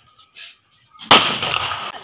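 A Diwali firecracker going off about a second in: one sudden loud bang followed by a noisy tail that dies away over most of a second.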